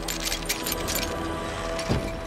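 Film score holding sustained tones, with a scatter of sharp clicks and rattles over it and a low thump just before the end.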